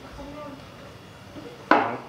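A man's voice: faint low speech sounds, then a sudden loud vocal sound near the end as he starts talking again.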